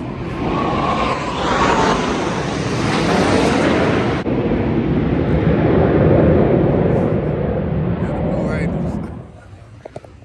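Formation of jet aircraft trailing smoke flying past overhead: a loud, rushing jet roar that builds for several seconds, is loudest about six seconds in, and fades away near the end.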